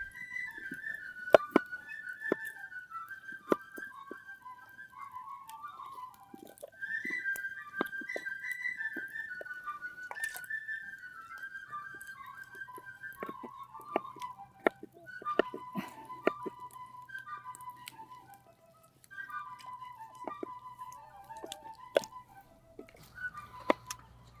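A solo fife playing a lively single-line tune as background music, its notes stepping up and down. Scattered sharp clicks, likely knife strokes on wooden cutting boards, come through under it.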